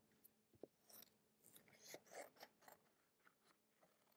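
Scissors cutting around a circle traced on a sheet of paper: faint, irregular crisp snips with some paper rustle.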